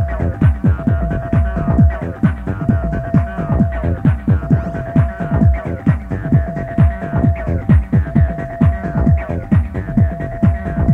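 Electronic dance music from a club DJ set: a steady driving beat of deep, falling bass drum hits with a light tick on top, about two a second, under a held synth note that slides down at the end of each phrase, repeating about every two seconds.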